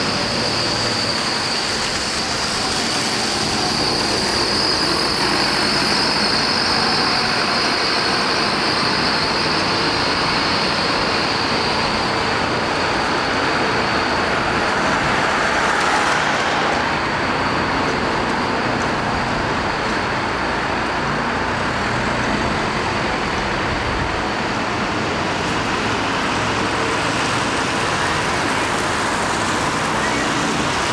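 Street traffic: buses and cars passing on a wet road, a steady hiss of tyres and engines. A car passes close, louder, about halfway through.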